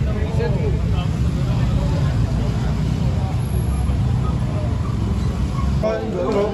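Motorcycles idling in a low, steady rumble among a gathered crowd, with people talking over it.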